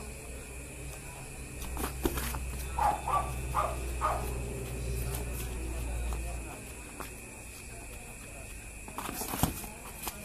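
Faint voices of onlookers over a low rumble, with a few sharp knocks about two seconds in and again near the end.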